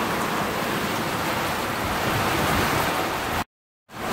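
Heavy tropical-storm rain falling steadily, a dense even hiss. The sound drops out completely for a moment near the end.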